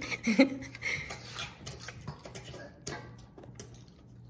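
A utensil scraping and clinking in a stainless steel mixing bowl as cake batter is scooped out: a run of light, irregular clicks and scrapes. A brief voice is heard at the start.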